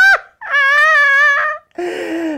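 A woman's high-pitched, wordless vocalizing, whimper-like: a short note, then one long wavering note of about a second. A lower, breathier voice starts near the end.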